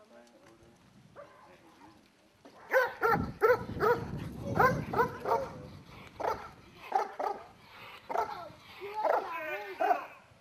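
Belgian Malinois barking repeatedly at a decoy standing still in front of it, about two barks a second, starting between two and three seconds in.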